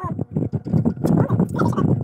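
Close-up chewing and crunching of unripe green mango slices, a rapid, dense run of crunches, with short vocal noises mixed in.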